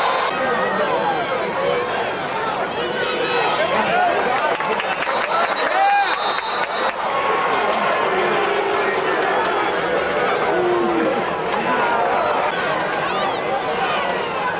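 Football spectators in the stands talking and shouting over one another, a steady mix of many voices with the odd louder call standing out.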